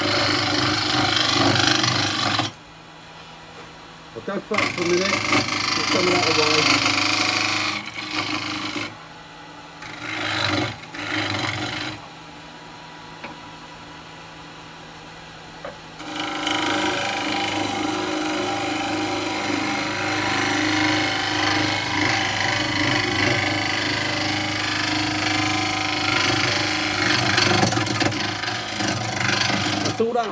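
A carbide cutter scraping a spinning wet-wood bowl blank on a wood lathe during rough turning, over the steady hum of the lathe's motor. The cut stops for a few seconds about 2.5 s in, again briefly near 8 s, and from about 12 to 16 s, leaving only the hum, then resumes steadily for the rest of the time.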